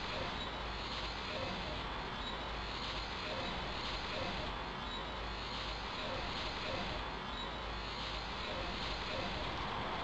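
Steady, even background noise with no distinct events: a low, unbroken hiss and rumble.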